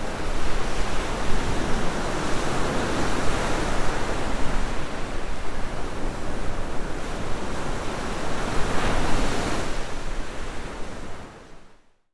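Ocean surf washing in, a steady rush of breaking waves that swells about nine seconds in, then fades out at the end.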